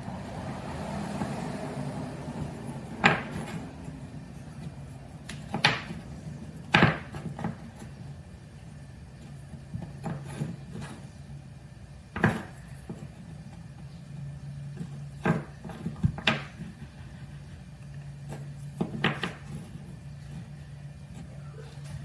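Small cut walnut blocks being set down and shuffled into a row on a wooden workbench: light wooden knocks and clacks, about eight of them at irregular intervals, over a steady low hum.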